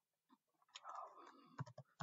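A few faint computer keyboard keystrokes, sharp clicks mostly in the second half, as code is typed.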